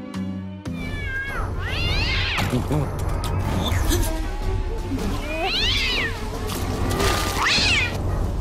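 Cat yowling three times, each call rising and then falling in pitch, over a steady low musical drone.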